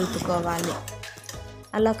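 A woman's voice speaking Telugu over background music. There is a short, quieter pause in the middle.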